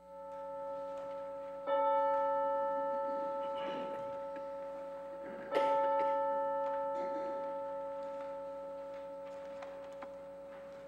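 A bell-like chime rings through a church sanctuary. It swells softly at first, then is struck sharply twice, about two seconds in and again just before six seconds. Each strike rings on with a long, slow fade.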